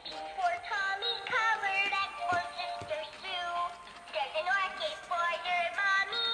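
Animated plush bunny toy singing a song through its small built-in speaker: a high-pitched sung melody, with a couple of light taps about two and a half seconds in.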